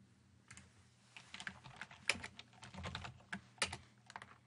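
Typing on a computer keyboard: one keystroke about half a second in, then a quick run of keystrokes from a little over a second in until near the end.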